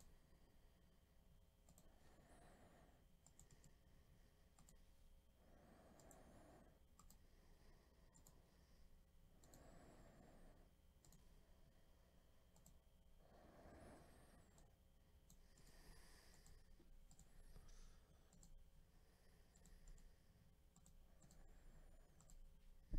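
Near silence: faint room tone with a few faint clicks and soft swells of noise about every four seconds.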